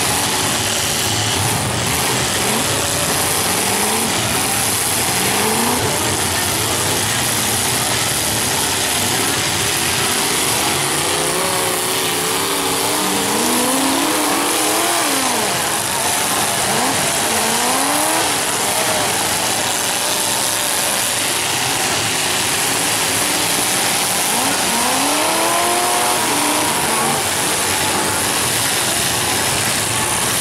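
Several demolition derby car engines running and revving together in a constant loud din, their pitch rising and falling again and again.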